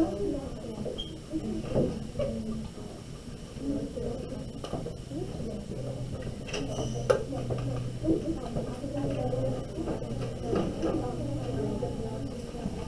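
Low, indistinct chatter of several people talking among themselves, with a few light knocks. A low steady hum comes in about halfway through.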